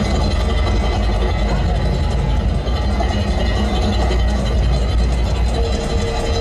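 Loud, steady low rumble from a parade truck and its sound system, with music and crowd noise mixed in. A steady held tone comes in near the end.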